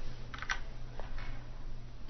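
A few short, faint clicks over a steady low hum and faint hiss.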